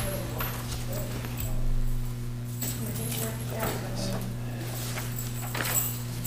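Courtroom room tone: a steady low hum with scattered light knocks and handling sounds, and faint voices in the background.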